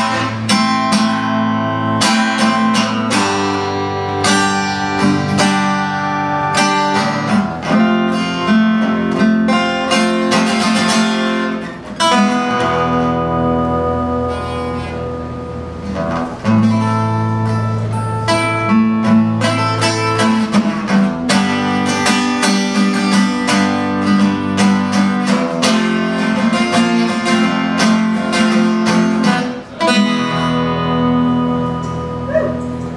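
Solo acoustic guitar, picked and strummed, with low bass notes under the chords. The playing thins out briefly about twelve seconds in and again about sixteen seconds in.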